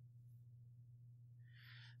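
Near silence: room tone with a steady low hum and a faint soft noise just before the end.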